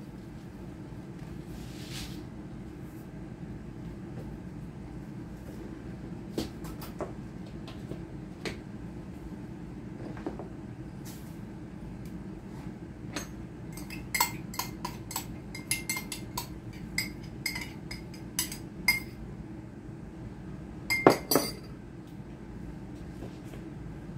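A metal wire whisk clinking against a glass measuring cup. There are a few scattered taps at first, then a quick run of ringing clinks about halfway through, and a louder clatter near the end.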